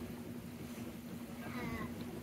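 Steady low hum of a Königssee tour boat's electric motor over water noise. Near the end comes a brief, high, falling voice-like call in the background.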